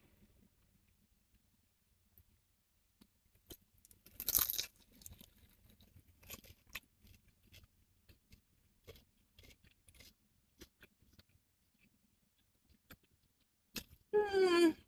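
A fried chicken dumpling being bitten into with a short crunch about four seconds in, then faint crunchy chewing with scattered small clicks.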